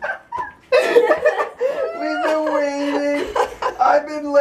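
Uncontrollable laughter from a man and a woman, after a brief pause near the start, breaking into long held, wavering cries that step up and down in pitch.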